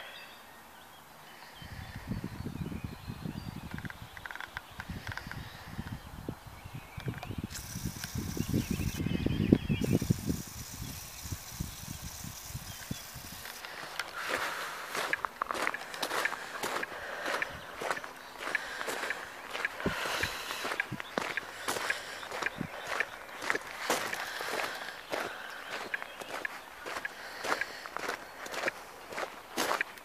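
Footsteps crunching on gravel, about two steps a second, from about halfway through. Before that there is a low rumble, loudest near the middle.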